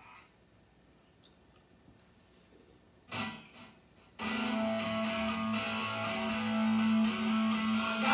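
Recorded distorted electric guitar played back through the sound system: quiet for about three seconds, a brief strum, then a chord held and ringing steadily from about four seconds in.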